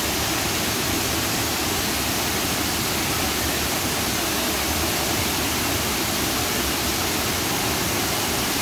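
A tall, narrow waterfall plunging into a rock pool: a steady, unbroken rush of falling water.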